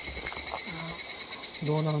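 Cicadas shrilling in a loud, steady high-pitched chorus, with a fainter pulsing trill of about ten pulses a second beneath it.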